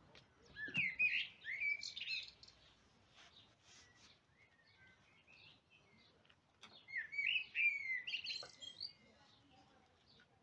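Songbird song: two spells of rapid, warbling chirps, about a second in and again near seven seconds, with a few scattered single chirps between them.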